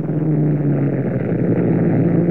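Propeller aircraft engines droning steadily and loudly, a low even hum with no change in pitch.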